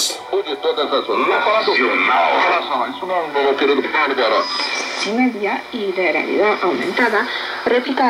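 Speech from a shortwave AM broadcast station playing through a communications receiver, with a light hiss of radio noise behind it. Near the end the receiver is retuned off 11780 kHz, and the speech carries on, with a faint rising tone and a brief click as the tuning changes.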